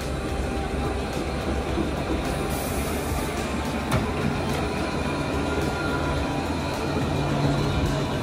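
A city tram running past on its rails: a steady rolling rumble, with a sharp click about four seconds in.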